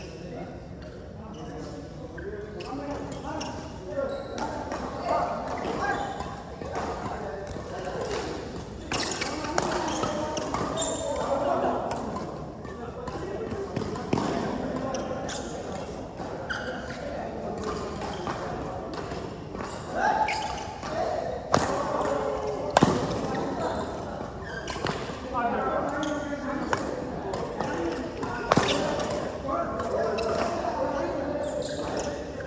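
Badminton rally: sharp racket hits on a shuttlecock at irregular intervals, the loudest pair about two-thirds of the way in, heard in a large hall over people talking throughout.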